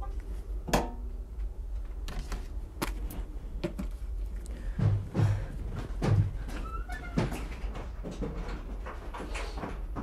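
Scattered knocks and clicks with a few dull thumps around the middle, over a steady low hum; a brief squeak a little before seven seconds in.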